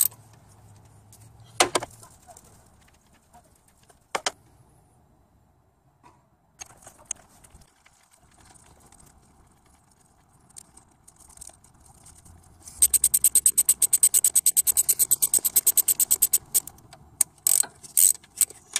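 Ratcheting wrench clicking in a rapid, even run of about ten clicks a second for roughly four seconds, starting about two-thirds of the way in, as it turns the nut on a camshaft seal press tool to drive the seal home. A few single metal clinks come before it.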